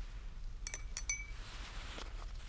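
Glass rod and thermometer clinking against a glass beaker as they are washed: four light clinks in quick succession about halfway in, the last one ringing briefly.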